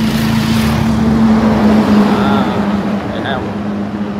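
A small motorbike passes close by on the road, its engine and tyre noise swelling over the first two seconds and then fading. A steady low hum runs underneath.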